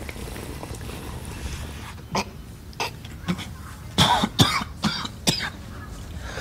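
A man coughing in short, harsh fits after drawing on a smoke, starting about two seconds in and coming thick and fast around four seconds, over a low steady outdoor rumble.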